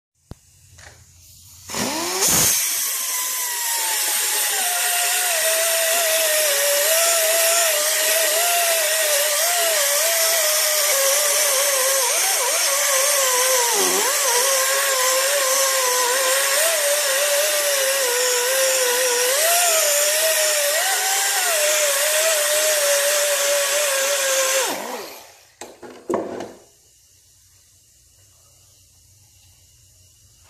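Handheld power tool working on the cast-iron deck of a bare 5.0L Ford V8 block, cleaning it ahead of an acid wash. Its motor spins up about two seconds in, and its whine sags and wavers as the tool is pressed onto the metal, over a loud scrubbing hiss. It spins down about five seconds before the end, with one brief blip after.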